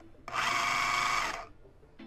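Food processor motor run in one pulse of about a second, starting a quarter second in and cutting off, with a steady whine. It is chopping an herb and vinegar sauce while olive oil is drizzled in to emulsify it.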